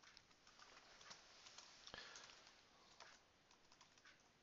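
Faint typing on a computer keyboard: a run of quick, soft key clicks at an uneven pace as a line of code is typed.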